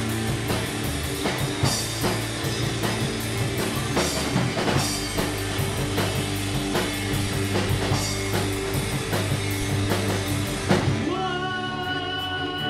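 Live rock band playing: electric guitars over a drum kit with repeated crash cymbals. About eleven seconds in the drums stop, leaving sustained guitar notes ringing.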